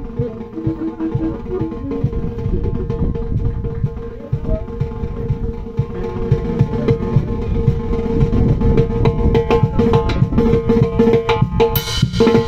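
Live band music with drums and percussion keeping a steady dance beat under a long, held melody line.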